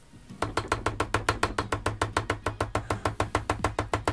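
Hair stacker tapped rapidly on the bench, about ten quick taps a second, settling a bunch of bleached elk hair tips-down so the tips line up evenly.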